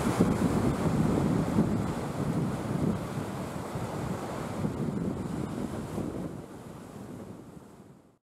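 Stormy sea and wind: a steady rush of waves and wind noise that gradually fades out over the last couple of seconds.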